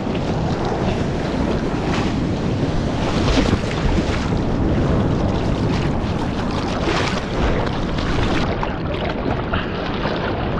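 Seawater rushing and splashing around a surfboard being paddled through choppy surf, with wind buffeting the microphone. A few louder splashes stand out over the steady rush.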